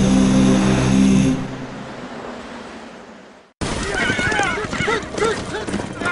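A chanted vocal jingle with a held drone fades out over the first three seconds. After a brief silent cut comes a film soundtrack of horses neighing amid men shouting, with many short rising and falling cries.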